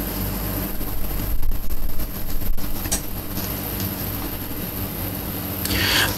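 Outdoor racecourse ambience at the starting stalls: a steady low hum with irregular louder knocks and rustles, then a rising surge of noise near the end as the stall doors spring open and the horses break.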